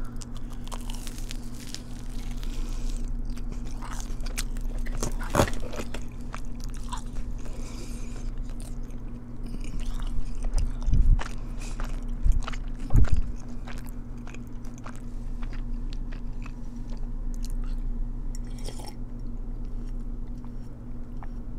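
Crunchy bites and chewing of a Korean corn dog, many small crisp crackles spread through, with a few louder thumps a little past halfway.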